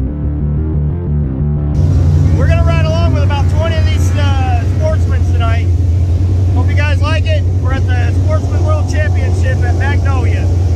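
Intro music for the first two seconds or so, then a man talking over the steady low drone of dirt late model race car engines running in the pits.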